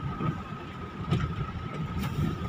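A vehicle driving slowly over a rough dirt road, heard from inside the cab as an uneven low rumble of engine and tyres, with a thin steady high tone running above it.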